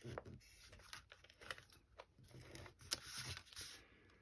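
Faint rustling and scraping of folded patterned paper being handled and pressed against a work mat, with scattered soft clicks and one sharper tap about three seconds in.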